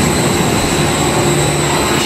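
Steady running noise of a detachable gondola lift's station machinery, as the overhead tyre conveyor and rope wheels carry cabins through the terminal: an even mechanical rushing sound with a low steady hum under it.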